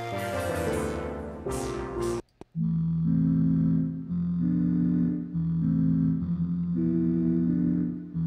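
Native Instruments Low End Modular software synthesizer playing: first a bright chord with a falling sweep that cuts off about two seconds in, then, after a brief gap, low sustained synth chords moving to a new chord every second or so.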